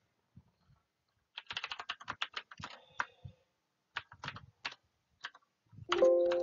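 Computer keyboard typing: quiet at first, then a quick run of keystrokes starting about a second and a half in, followed by a few scattered key presses.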